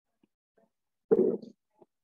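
A short spoken phrase, "I do", about a second in, with near silence before it.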